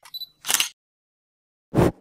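Handling noise on a handheld wireless microphone with a furry windscreen: a few tiny clicks near the start, a short puff of noise, then about a second of dead silence, and two loud, short bursts of rustle or breath on the mic near the end.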